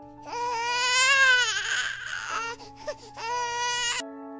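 Newborn baby crying: one long wavering cry of about two seconds, then a shorter cry near the end, over soft held music chords.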